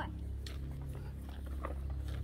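Quiet outdoor background: a low steady rumble with a few faint soft clicks.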